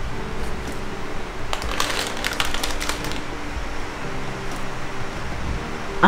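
Crinkling of a plastic packet being handled, a cluster of sharp crackles from about a second and a half in that lasts a second or so, over soft background music.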